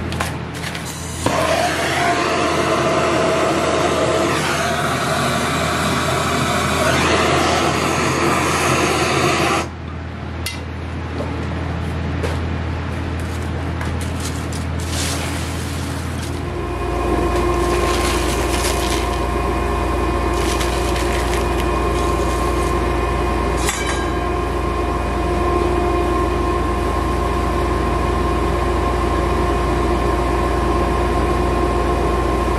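Paper and cardboard kindling rustling and crackling as it is laid and lit in a coal forge. About halfway through, the forge's air blower starts and runs with a steady hum, driving air through the burning coal.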